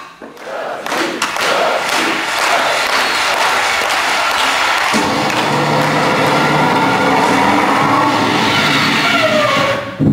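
Audience applauding and cheering, swelling over the first second; about halfway through, music comes in under the crowd noise, and it all drops off sharply near the end.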